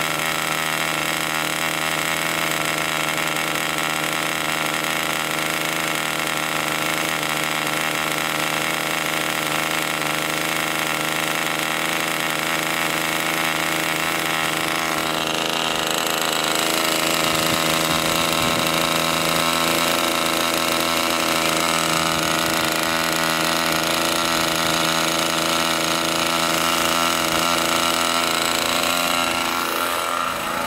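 Picco .40 Skyward two-stroke model airplane glow engine running steadily and loudly with an even, high buzz. It is being run on nitro fuel to get the oil circulating. Its tone changes a little about halfway through.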